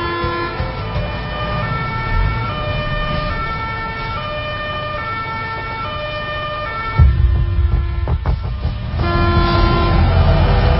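Emergency vehicle siren alternating between a high and a low note over the low rumble of traffic. About seven seconds in, a sudden louder low rumble with a few knocks takes over briefly before the siren notes return.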